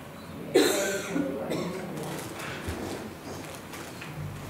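A sudden loud vocal sound from a person about half a second in, easing off over the following second, with fainter scattered sounds after.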